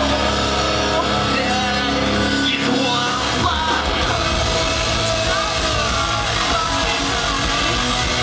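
A rock band playing live through a PA at full volume: distorted electric guitars, bass and drums under a lead singer singing into a handheld microphone, heard from the audience.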